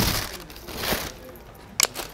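A sneaker being handled out of its cardboard shoebox: rustling of box and packing paper in two bursts, at the start and about a second in, then a sharp click near the end.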